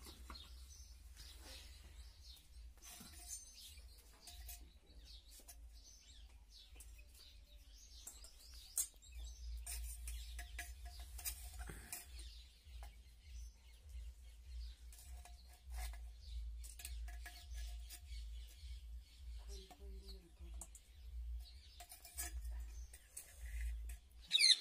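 Faint, scattered clinks and knocks as roasted sweet potatoes are lifted out of a clay pot with sticks and dropped into a steel colander. Birds chirp in the background over a low steady hum.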